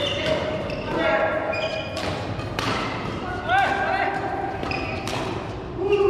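Badminton rally on a court floor: a few sharp racket strikes on the shuttlecock, with sneakers squeaking as players move, in a large hall.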